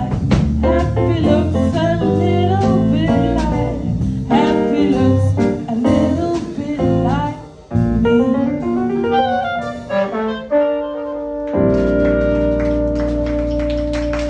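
Small jazz band playing live, with clarinet lines over keyboard and drums, then settling about three-quarters of the way through into a long held chord.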